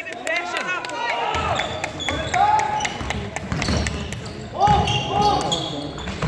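A basketball being dribbled on a wooden sports-hall floor, with short high squeaks of players' shoes and shouted calls from the players and sideline.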